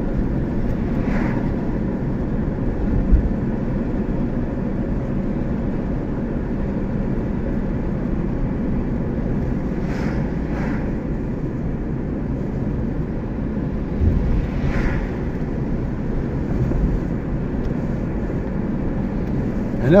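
Steady low rumble of a car on the move, tyre and engine noise heard from inside the cabin, with a few brief swishes as oncoming vehicles pass.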